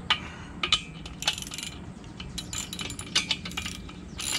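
Irregular metal clinks and clicks of steel bolts, nuts and wrenches being handled against a steel trailer dolly frame as bolts are taken back off.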